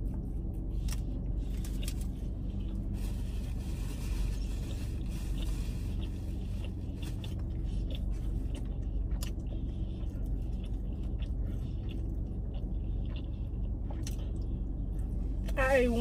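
Chewing and biting into a taco, with faint wrapper rustles, over a steady low rumble inside a car cabin.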